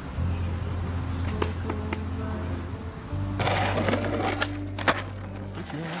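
Music with long held bass notes; about halfway through, skateboard wheels start rolling with a steady hiss, and the board clacks sharply a couple of times.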